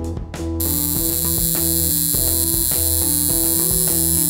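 Background music with a plucked-guitar melody, joined about half a second in by a steady, high hiss of TV-static noise.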